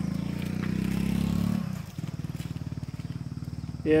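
Small motorcycle engine running with an even, rapid pulsing rumble; it eases off and gets quieter about a second and a half in.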